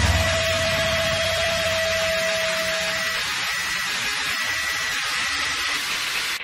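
Sustained harsh noise drone after a grindcore song: a steady, dense hiss at an even level with a single held tone that stops about three seconds in.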